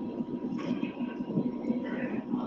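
Faint, distant man's voice, heard under the gap in the translation, with a thin steady tone.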